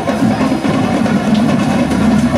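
Marching band playing, its drums beating a dense, steady marching rhythm.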